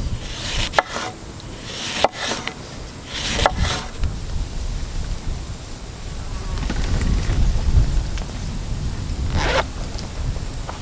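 Kitchen knife slicing through a lemon and knocking on a wooden cutting board: about four cuts in the first four seconds, each a short scrape ending in a sharp knock. After that a low rumble takes over.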